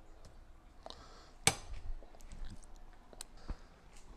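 A table knife scraping soft butter into a glass mixing bowl: faint scattered clicks and taps, with one sharper clink about a second and a half in.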